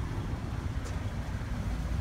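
Outdoor street noise: a steady low rumble of traffic in a narrow city street.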